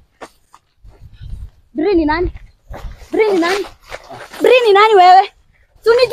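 A woman's raised voice in three loud, high cries with a wavering pitch, about two, three and four and a half seconds in.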